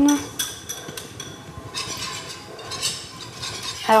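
Wire whisk clinking and scraping against a saucepan. It stirs egg yolks, lemon juice and zest over low heat to thicken them into a lemon cream. The stirring grows busier about halfway through.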